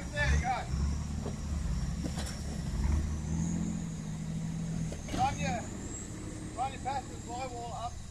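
Jeep Wrangler engine running at low revs as it crawls over creek-bed rocks, fullest in the first three seconds, then a steady hum for a couple of seconds before it eases off.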